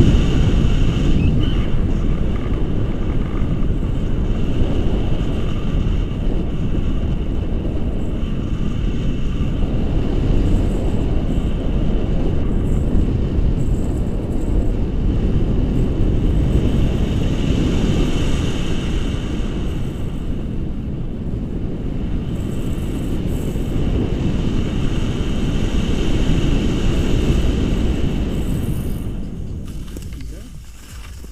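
Wind buffeting the action camera's microphone in flight under a tandem paraglider: a loud, steady, gusting rumble that eases off near the end as the glider touches down on the snow.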